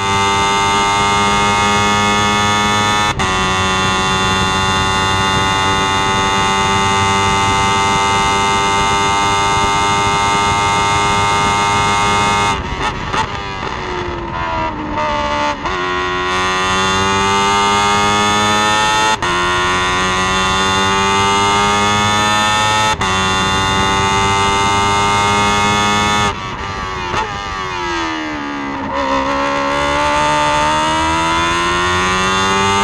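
Onboard sound of a single-seater formula race car's engine at high revs. It is held steady on a straight with a quick upshift a few seconds in. Then come braking and a run of downshifts with falling pitch, hard acceleration through two upshifts, and a second braking and downshift near the end before the revs climb again.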